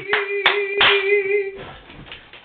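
A few people clapping by hand while a single held sung note carries on and stops about one and a half seconds in, after which the clapping thins out.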